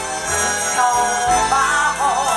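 Live jazz band music with a woman singing into a microphone, ending on a held note with vibrato.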